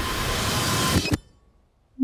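A loud, steady hissing noise from the film's sound design for about a second, cut off by a short low thump and then a drop to near silence.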